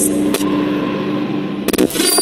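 Synthesized intro sound effects: a steady low drone with sharp glitch hits, one about half a second in and a loud cluster of hits near the end.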